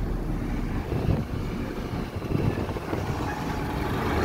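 Vehicle driving along a road, heard from inside it: a steady low rumble of engine and tyre noise.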